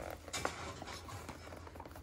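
Soft handling noise of a plastic RC car body shell being pressed onto its chassis by hand: a few light clicks and rubs, the loudest about half a second in.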